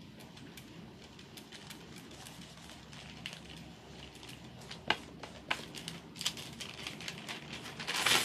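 Faint rustling and crinkling of a thin decoupage film (printed paper) being smoothed and stretched onto a wooden board with the fingertips, with scattered light clicks, a few sharper ones about five seconds in.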